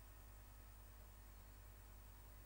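Near silence: room tone with a steady low hum and faint hiss.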